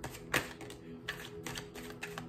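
A deck of tarot cards being shuffled and handled in the hands: a series of crisp card clicks and snaps, the loudest about a third of a second in, with a card laid down on the table.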